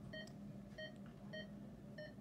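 Hospital bedside medical equipment beeping: short electronic beeps repeating about every 0.6 seconds, over a faint steady low hum.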